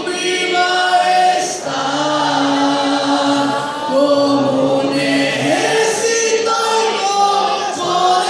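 A group of boys singing together in church, one of them into a handheld microphone, with long held notes.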